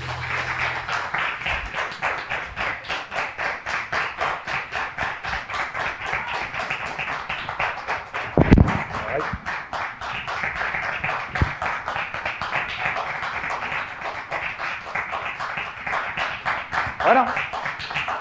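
Audience applauding with steady, dense clapping, with one low thump about halfway through.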